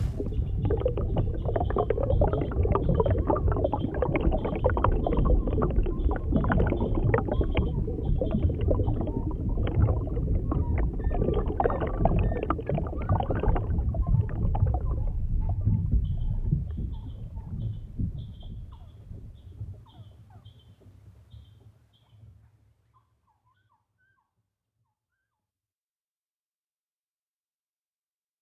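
Low rumbling noise with many small knocks and clicks, fading away over about six seconds into silence.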